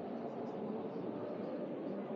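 Steady murmur of a crowd, a blur of many distant voices with no single voice standing out.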